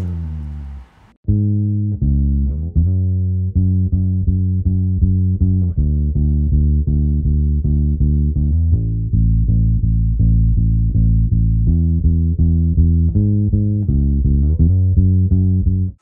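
Solo electric bass guitar. A short note slides down, there is a brief break about a second in, then a steady run of plucked notes plays out the gospel 'seven-three' movement leading to the six chord, in A major.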